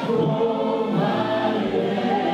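Live gospel praise and worship music: a man singing lead into a microphone while a group of voices sings with him over a sustained accompaniment.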